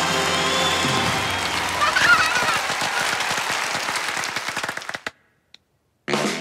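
The stage-show music ends about a second in and applause follows, with a brief high cheer, dying away to silence near the end.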